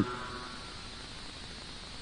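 A pause in a man's speech. The last word fades in a faint echo during the first half second, then only a steady low hiss of recording noise remains.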